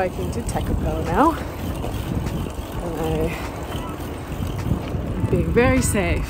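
Wind rumbling on the microphone of a camera held by a rider on a moving bicycle, with a few short vocal sounds from a woman, the last one near the end rising in pitch.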